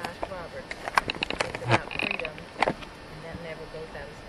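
Faint voices with scattered short clicks and knocks, and a brief high chirp about halfway through.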